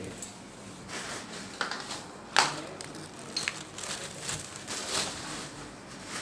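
Irregular rustling and handling noises with scattered clicks, and one sharp knock about two and a half seconds in.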